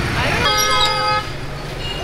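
A vehicle horn sounds once, a steady tone lasting under a second that starts about half a second in and cuts off, over the constant rumble of busy street traffic.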